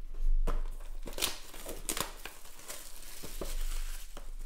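Clear plastic shrink wrap being torn off a Panini Prizm football card box and crinkled in the hands: a run of irregular crackles and rips, loudest in the first second.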